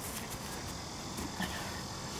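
Faint steady outdoor background of insects chirring, with a brief soft sound about one and a half seconds in.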